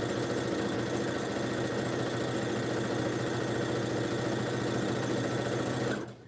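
Electric sewing machine running steadily as it stitches a seam through pieced quilt fabric, stopping near the end.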